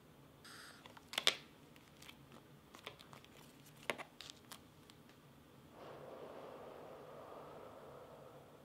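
Plastic clicks and snaps from a 3M reusable half-face respirator being handled and its head strap adjusted, with two louder snaps about a second in and about four seconds in. A steady airy hiss follows for the last two seconds.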